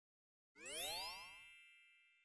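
Cartoon chime sound effect: about half a second in, a rising glide runs up into a bright ringing ding that fades away within about a second.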